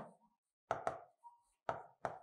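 Marker pen tapping on a whiteboard while writing letters: a few short, sharp taps, two in quick succession a little after the middle and another near the end.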